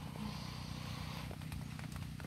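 Steady rain falling, a soft even hiss.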